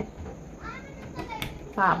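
Speech only: a short pause between phrases, holding a faint murmur and a brief click, before the talking resumes near the end.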